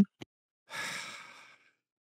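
A person's sigh: one breathy exhale that starts a little over half a second in and fades out within about a second.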